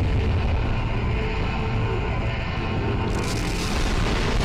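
Animated-battle explosion sound effects: a continuous deep rumble under background music, with a louder hissing blast coming in about three seconds in as the screen flashes white.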